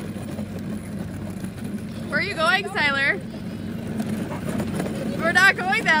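Hard plastic wheels of a toy ride-on car rolling over asphalt as it is towed along, a steady rolling noise. A high-pitched voice calls out about two seconds in and again near the end.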